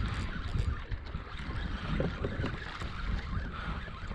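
Wind buffeting the microphone as an uneven low rumble, with a few faint scattered clicks over it.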